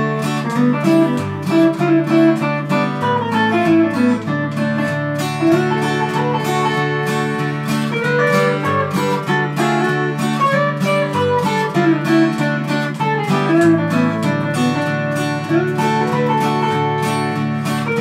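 Instrumental guitar break in a country song. An acoustic guitar strums a steady rhythm while an archtop guitar picks a single-note lead melody over it.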